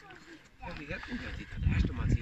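People's voices talking, with loud, irregular low rumbling on the microphone from about halfway through.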